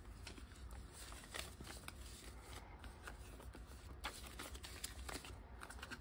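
Faint rustling and a few light clicks of paper dollar bills and the plastic envelope pages of a ring-bound cash binder being handled, over a low steady hum.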